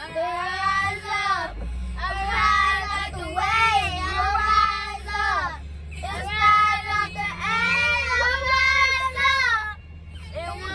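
Young girls singing together in several long sung phrases with short breaks between them, over the low rumble of the van they are riding in.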